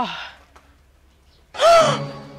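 A woman's exaggerated wail trailing off with a falling pitch. After a short pause comes a sudden loud, breathy gasp of shock near the end.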